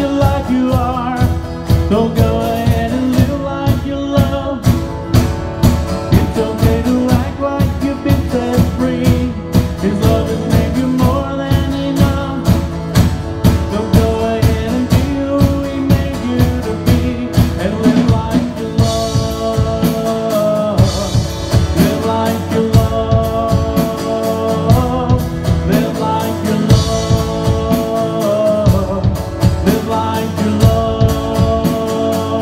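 Live worship song played by a small band: a guitar and a drum kit keeping a steady beat, with a man singing over them.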